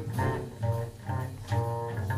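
Upright double bass plucked pizzicato in live jazz, playing a line of separate deep notes that each ring briefly.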